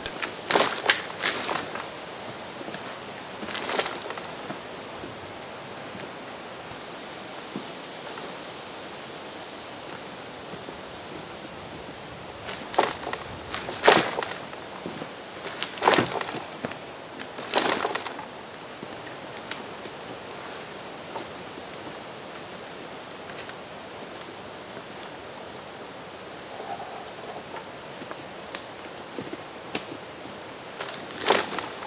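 Hand-operated tree puller being worked on a felled tree: scattered knocks and rustles, bunched between about 13 and 18 seconds in, over a steady outdoor hiss.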